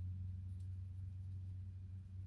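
A steady low hum with no other distinct sound.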